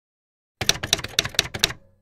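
Typewriter key strikes, a quick run of about five sharp clacks in just over a second, starting about half a second in.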